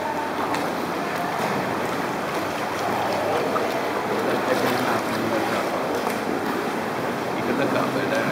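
A steady wash of water noise around inflatable sea canoes inside a sea cave, with the faint murmur of a group of paddlers' voices mixed in.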